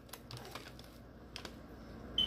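Faint chewing of a sandwich: a few soft mouth clicks and smacks, the sharpest about one and a half seconds in.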